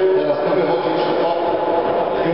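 Men's voices talking in a large, echoing sports hall, the speech smeared by the hall's reverberation.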